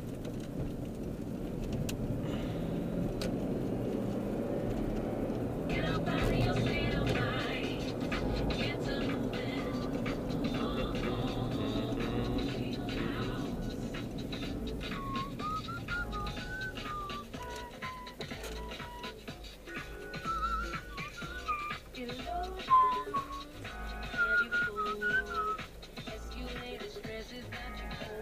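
Music playing inside a moving car over the cabin's low road and engine rumble. In the second half a high, wavering melody line, much like whistling, comes over it.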